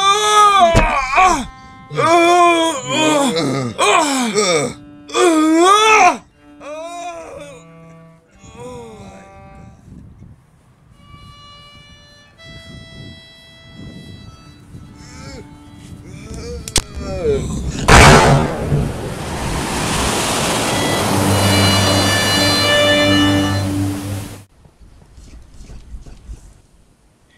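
Film soundtrack: a man's drawn-out groans and cries over music for about the first six seconds, then soft music. About 18 seconds in, a sudden loud bang is followed by a rushing noise lasting about six seconds, with music chords in it.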